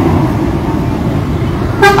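A low, steady rumble of engines, then about 1.8 seconds in a loud vehicle horn honks, a single steady note.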